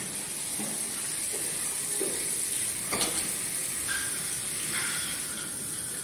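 Steady background hiss with a few faint clicks and taps, the clearest about three seconds in, from small hand tools being handled on a wooden frame.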